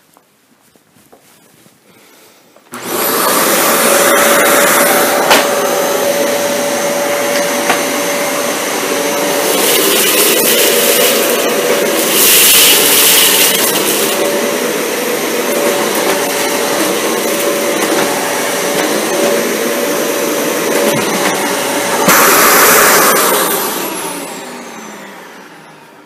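Dyson Cinetic Big Ball upright vacuum cleaner switched on about three seconds in, running on suction alone with its brush bar off, a steady rushing noise with a hum under it. It picks up lentils, peas and crushed cereal from a tile floor, growing louder and brighter a few times along the way. Near the end it is switched off and the motor winds down.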